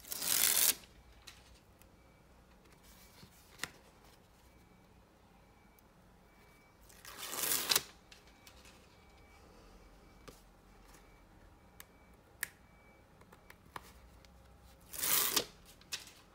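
Sheets of scrapbook paper rustling as they are picked up and moved by hand, in three short swishes about seven seconds apart, with a few light taps between.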